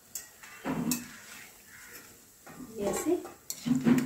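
Perforated steel slotted spoon scraping and clinking against a kadhai and a steel plate as fried pakoras are scooped out of the oil, with a few sharp clinks, loudest near the end.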